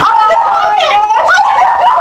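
High-pitched voices squealing and shrieking excitedly, with no pauses.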